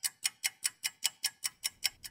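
Quick, steady ticking, about five evenly spaced crisp ticks a second, laid into the soundtrack under the title card.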